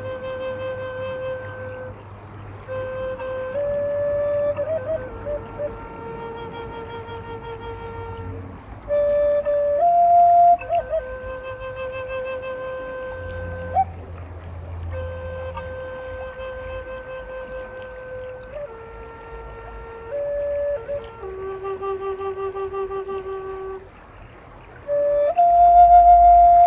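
Native American flute playing a slow melody of long, held notes in phrases of a few seconds, with brief pauses between phrases.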